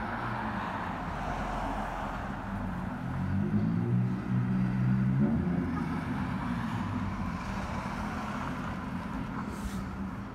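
A motor vehicle's engine on the street, swelling to its loudest about four to five seconds in and then fading, over steady traffic noise.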